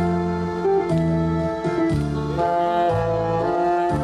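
Tenor saxophone playing a melody in held notes over a recorded accompaniment whose bass changes note about once a second.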